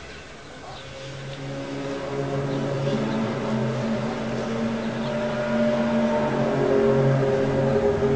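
Unexplained low drone heard outdoors: several steady tones layered together, shifting in pitch and swelling louder over the seconds.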